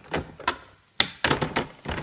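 Plastic drawing instruments, a drawing-board parallel rule and a set square, knocking and clicking against the board as they are slid and set in place at 45 degrees for hatching. It comes as a quick, irregular series of taps, the sharpest about a second in.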